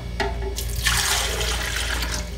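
Cold water poured into a plastic blender jar: a steady splashing stream that begins about half a second in.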